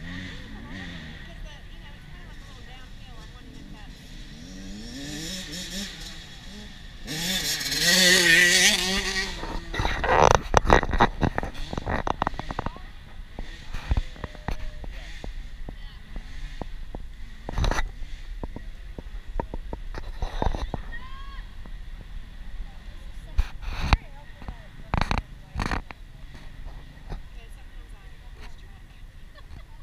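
Mini dirt bikes revving off a row start, their engines rising to a loud pass about 8 seconds in and then fading. After the pass come a burst of sharp clatter and scattered knocks.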